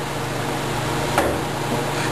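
Steady low hum of room noise, with one sharp click a little after a second in.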